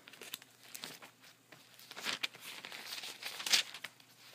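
Paper pages of a Bible being turned and leafed through, a run of soft crinkling rustles that thicken and grow louder from about halfway through.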